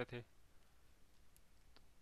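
Near silence: room tone with two faint clicks, one in the middle and one near the end.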